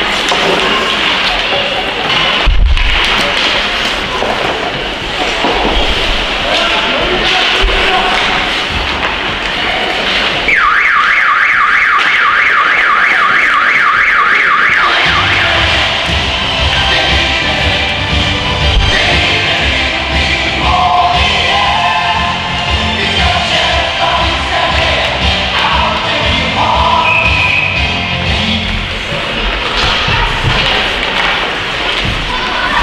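Ice rink hall noise with a sharp thud about two and a half seconds in, then the arena horn gives a loud, rapidly pulsing buzz for about four and a half seconds. Music with a steady beat then plays over the arena loudspeakers.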